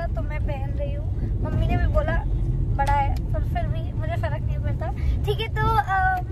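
A woman talking inside a moving car, over the steady low rumble of the car's cabin road and engine noise.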